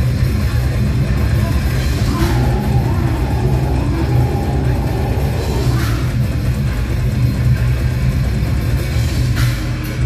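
Brutal death metal band playing live: heavily distorted electric guitars and drum kit in a loud, dense instrumental passage with no vocals, with sharp cymbal-like strikes every few seconds.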